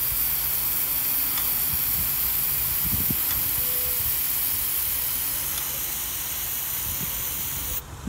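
Aerosol spray paint can spraying in one long continuous burst, a steady hiss that cuts off suddenly just before the end.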